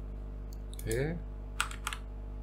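A few sharp keystrokes on a computer keyboard, the two clearest near the end, over a steady low electrical hum.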